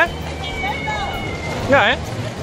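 A high-pitched voice squeals twice, once at the very start and once near the end, each a quick wavering up-and-down cry, over the steady hubbub of a busy indoor ice rink.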